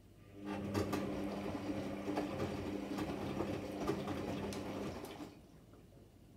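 Electra Microelectronic 900 washing machine turning its chevron drum in a short wash tumble of the delicate synthetics cycle. The motor hums steadily while the laundry tumbles with scattered clicks, starting about half a second in and stopping about five seconds in.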